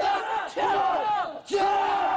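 A group of soldiers shouting together in unison during drill, in repeated drawn-out shouts about a second each, with a short break between them.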